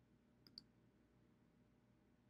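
Two quick faint clicks about a tenth of a second apart, from clicking on a computer to choose a new image. Otherwise near silence.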